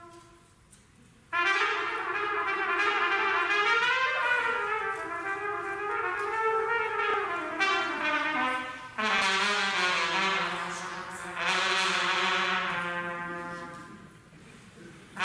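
Trumpet solo played live with a wind band. After a short hush, the trumpet comes in loudly about a second in with a long run of quick notes. Nine seconds in it starts a new, brighter phrase over a low held note, which swells once more and fades near the end.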